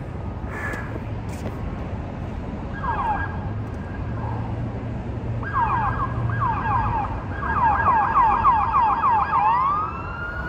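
Electronic emergency-vehicle siren sounding. It starts with a short burst of quick falling yelps about three seconds in, then a long run of rapid yelps, about six a second, which turns into a rising wail at the end. A steady low rumble runs underneath.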